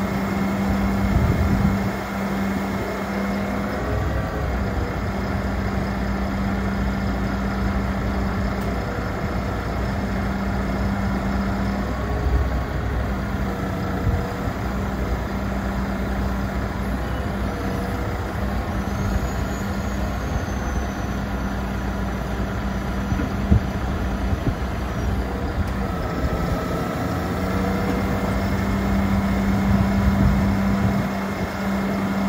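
The MAN TGS 33.440 truck's straight-six diesel running steadily, driving the hydraulic pump for its Palfinger PK 18002-EH knuckle-boom crane as the boom is worked by radio remote. Its steady hum breaks briefly every several seconds as the crane's movements start and stop.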